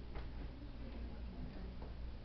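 Quiet room tone in a small hall: a steady low hum with a faint click or two.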